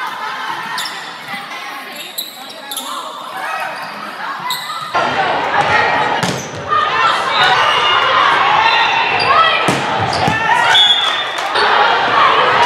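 Volleyball rally in a gymnasium: sharp slaps of hands and arms on the ball, with players calling and spectators' voices echoing in the hall. It gets suddenly louder and busier with voices about five seconds in.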